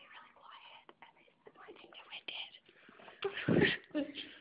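Hushed whispering voices, with a louder burst of sound near the end.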